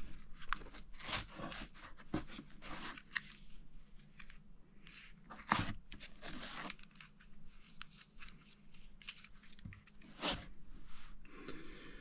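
Hands handling packed parts in a foam-lined hard case: irregular rustles, scrapes and clicks as battery packs are lifted from their foam slots. Two louder knocks come about five and ten seconds in.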